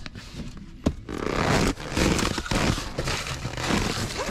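Cardboard boxes scraping and shifting against one another while plastic stretch wrap crinkles, as a box is dragged out of a packed cardboard pallet bin. A couple of sharp knocks come in the first second, then steady rustling and scraping.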